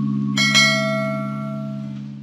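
A bright bell chime sound effect strikes about half a second in and slowly fades, marking the notification bell being clicked, over a sustained low synth drone.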